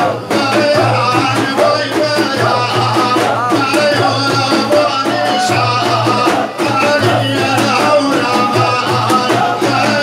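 Sufi zikr music: voices chanting over a steady, repeating drum rhythm.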